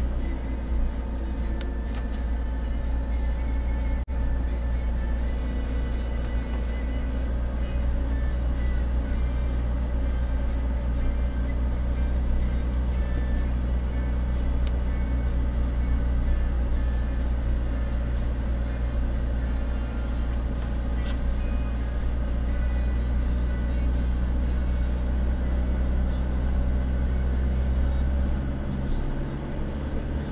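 Steady low rumble of a car driving slowly, engine and tyres heard from inside the cabin through the dashcam's microphone; the rumble thins briefly near the end.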